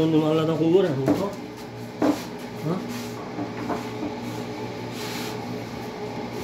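A few scattered knocks of a kitchen knife cutting a green bell pepper on a wooden cutting board, after a short stretch of talk at the start.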